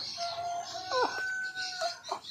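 A rooster crowing: a long, held call with a short break in its pitch about a second in.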